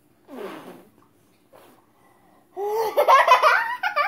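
A young child laughing: a short high-pitched burst about a third of a second in, then loud, rapid giggling from about two and a half seconds in.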